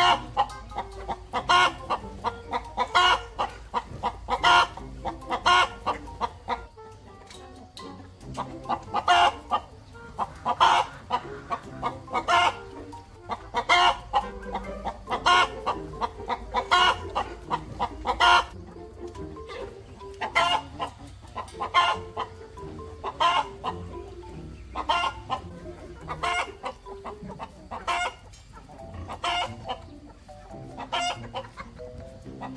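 A chicken clucking over and over, a short sharp cluck about every second or so.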